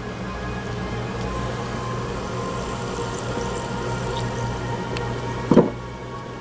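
Background music over the steady hum and fine bubbling of a running HHO water-electrolysis cell, with one brief knock near the end.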